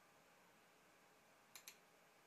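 Near silence, broken about a second and a half in by two faint, quick clicks of a computer mouse button.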